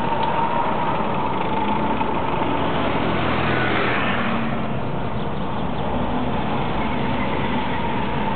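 Taxi running through town traffic, heard from inside the cab: steady engine and road noise. A scooter passes close alongside about midway, the noise swelling briefly as it goes by.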